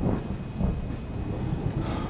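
A low, steady rumble of stage thunder from a storm sound effect.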